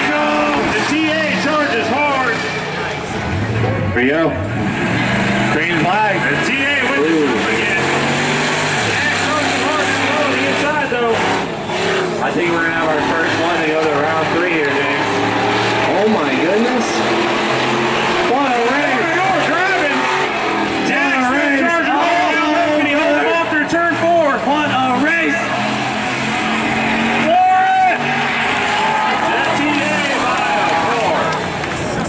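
Street cars racing on an oval track, their engines running hard under acceleration, mixed with spectator voices.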